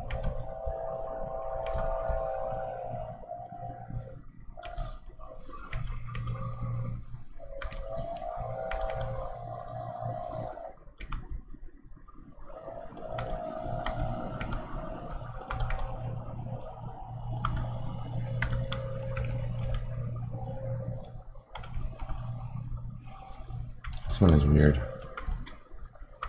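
Stylus taps and clicks on a Wacom Intuos Pro drawing tablet, with some computer key clicks, over a low droning hum that comes and goes every few seconds. A louder low sound comes near the end.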